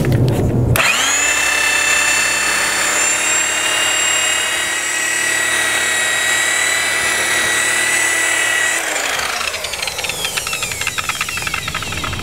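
Electric rotary buffer with a seven-inch wool cutting pad, spinning up with a rising whine about a second in and running steadily as it works compound into faded, chalky fiberglass gel coat, then winding down with a falling pitch about nine seconds in.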